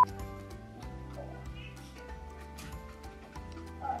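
Background music with held tones over a steady low bass. A child says a brief word about a second in, and there are faint light clicks.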